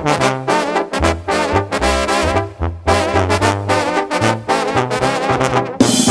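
Regional Mexican banda music: an instrumental brass passage of trumpets and trombones over a stepping bass line, with a brief break nearly three seconds in.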